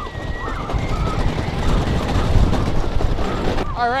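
Viper wooden roller coaster's train running along the track, heard from on board: a continuous loud rumble and rapid clatter of the wheels on the rails.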